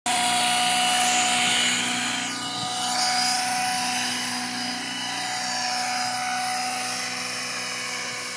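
Nitro-powered 700-size RC helicopter's glow engine and rotor running at flight revs, a steady high-pitched whine over a buzzing engine tone. About two seconds in, a high sweep falls in pitch and the sound eases off as the helicopter climbs away.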